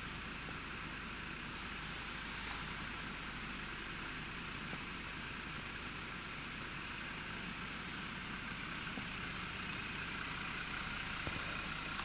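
Steady low rumble of distant city traffic, with no clear single event.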